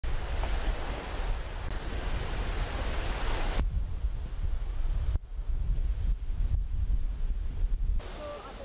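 Waves washing onto a beach with wind rumbling on the microphone. About three and a half seconds in, the hiss of the surf cuts off abruptly, leaving mostly the low wind rumble.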